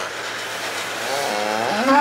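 Calf mooing: one drawn-out call that begins about halfway through, over a steady low hum.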